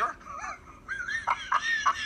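A man laughing hard in a high-pitched, cackling run of short bursts, about three a second, starting about a second in.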